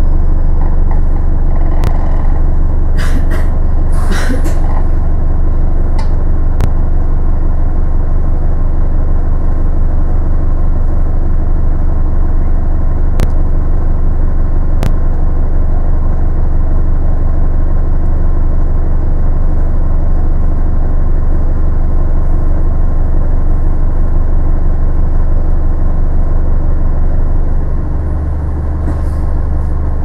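Steady low rumble of a bus heard from inside the passenger saloon as it drives. A few clicks and rattles come from the cabin about three to five seconds in, and single clicks come later. The rumble dips briefly and changes pitch near the end.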